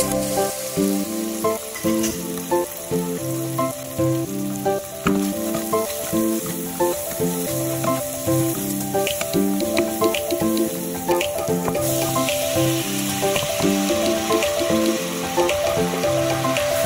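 Chopped onions and chicken sizzling as they fry in a pot, stirred with a wooden spoon, under background music.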